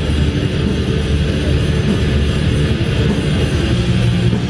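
Live metal band playing loud: distorted guitars, bass and drums as one dense, bass-heavy wall of sound, heard from the audience.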